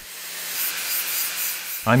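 Angle grinder with a grit-60 flap disc grinding down the edge of a steel pipe to remove burrs: a steady, high rasping hiss that swells over the first half-second, under a faint low motor hum.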